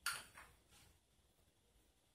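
Small hard-plastic ball-and-vase magic prop clicking as it is handled: a sharp click at the start and a softer one about half a second later.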